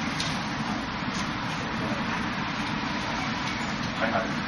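Two faint wooden knocks in the first second or so, typical of forearms striking the wooden arms of a Wing Chun wooden dummy, over a steady rushing background noise.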